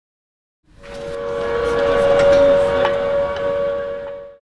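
A sustained whistle-like sound: two steady, closely pitched tones over a rushing hiss. It swells in under a second in, peaks midway and fades out at the end.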